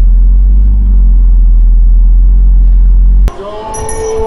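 Loud, steady low rumble of a car heard from inside the cabin. About three seconds in it cuts off abruptly and gives way to music with jingle bells.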